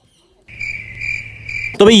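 Insect trilling steadily: one even, high-pitched tone lasting just over a second, over a faint low hum. It starts about half a second in, after a moment of near silence.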